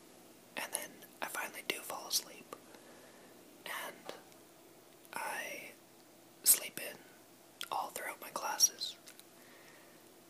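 A person whispering in short phrases with brief pauses between them, and one sharp click about six and a half seconds in.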